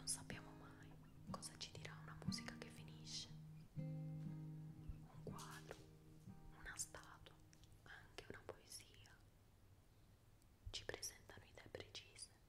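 Quiet guitar music with held notes that die away about two-thirds of the way through, with whispered speech over it.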